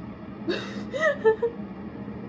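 A woman gives a short, breathy, whimpering laugh with a gasp, reacting to the drink machine apparently starting up again. A faint steady hum runs underneath.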